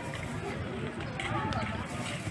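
Indistinct voices talking in the background of a street market, faint, over a steady low background noise.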